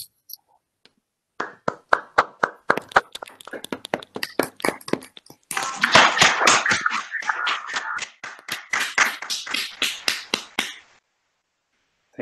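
Applause from a few people clapping over a video call: scattered claps start about a second and a half in, build to fuller, denser clapping around halfway, then die away about a second before the end.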